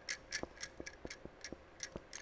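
Quiet, steady ticking of a clock, about four ticks a second.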